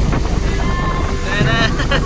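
Wind rushing over the microphone aboard a moving boat, over a steady low rumble of the boat's motor and water. A person's voice cuts in briefly past the middle.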